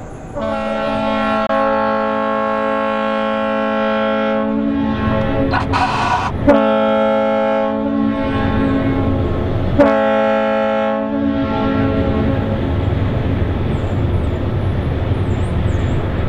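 Towboat's horn sounding three blasts: two long ones of about four and three seconds, then a shorter third. A steady low rumble follows.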